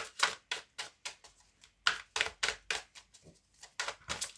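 A deck of tarot cards being shuffled by hand: the cards slap and riffle against each other in a quick, uneven run of soft clicks, three or four a second, with a brief pause about halfway through.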